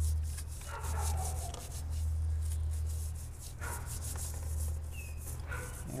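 Scrubbing and scraping at a corroded car battery terminal clamp, a run of short scratchy strokes, over a steady low rumble. A few short whines sound about a second in, near the middle and near the end.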